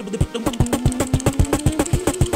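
Beatboxing: fast vocal percussion at about nine hits a second, joined about half a second in by a held vocal note that rises slightly in pitch.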